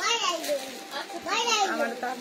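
Speech only: a high voice talking in two short phrases, one at the start and one just past the middle.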